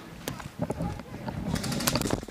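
Leaves and branches rustling and brushing against gear, with footsteps on a dirt trail, as someone pushes quickly through brush. It grows into a dense rush of crackling near the end.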